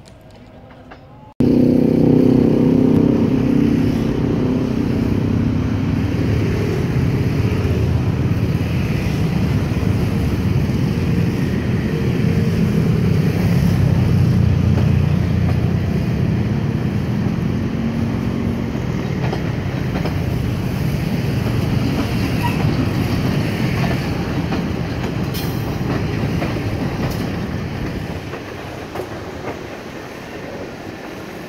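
Diesel-hauled passenger train passing close by, a loud low rumble of the locomotive and coaches running over the rails. It starts abruptly and eases off near the end.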